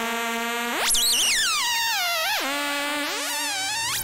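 Rakit Disintegrated Cracklebox analog noise synth playing a steady buzzing drone, joined about a second in by a second tone that swoops very high, wobbles down in steps and climbs again near the end.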